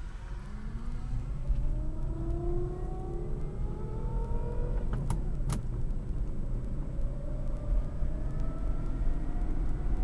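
Electric drive of a 72-volt battery-powered Toyota Tercel conversion whining as the car gathers speed, its thin whine rising in pitch, over low road and tyre rumble heard from inside the cabin. A couple of sharp clicks come about five seconds in, after which the whine climbs again from a lower pitch.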